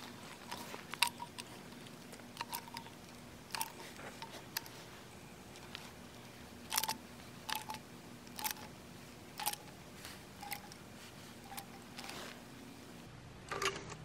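Faint, irregular clicks and crackles, about a dozen spread out, from a plastic sealant cartridge being squeezed by hand as the last of the self-leveling sealant is pressed out, over a low steady hum.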